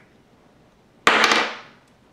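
An alkaline battery dropped about six inches onto a hard wooden tabletop, landing with one sharp clatter about a second in that dies away within a second. It hits and falls over without bouncing, the sign of a good, charged battery.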